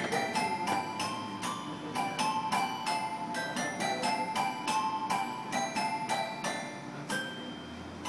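Toy piano playing a quick melody of single struck notes, about two to three a second, each ringing briefly; the playing softens near the end.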